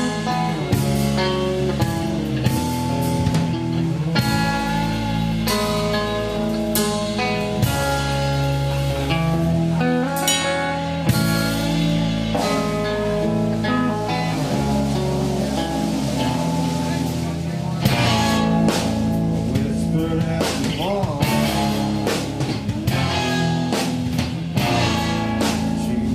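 A rock band playing live, with guitars and drums.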